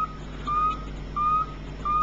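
Blocking-oscillator capacitor-dump battery charger giving out a short high tone that rises slightly in pitch, repeating about every two-thirds of a second over a steady low hum. The tone comes in step with the circuit's cycle of charging its capacitor bank and dumping it into the battery.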